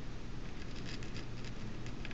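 Faint scattered clicks of a computer mouse over a low steady hum.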